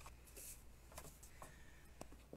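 Near silence, with a few faint rustles and taps of a scrap of white cardstock being handled.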